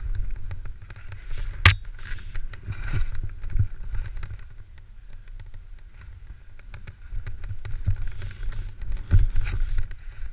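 Riding down through deep powder snow: surges of hissing snow spray with each turn over a constant low rumble of wind on the microphone. A single sharp knock about one and a half seconds in.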